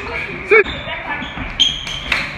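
Feet scuffling and thudding on a wooden floor as partners grapple. A number is shouted about half a second in, a brief high squeak comes about one and a half seconds in, and a sharp knock follows just before the end.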